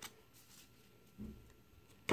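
Near silence: quiet handling of baseball cards at a table, with a faint click at the start and a soft low bump just over a second in.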